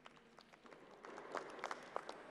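Faint, scattered hand-clapping from a small number of people, with a few louder, distinct claps in the second half.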